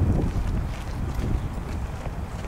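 Wind buffeting the camera microphone: an uneven low rumble.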